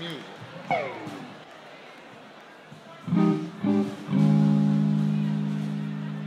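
Electric guitar played on its own between songs: a falling slide about a second in, then two short stabbed notes, then a held note that rings on and slowly fades.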